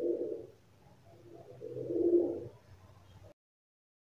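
A bird cooing: two low calls about two seconds apart, then the sound cuts off suddenly.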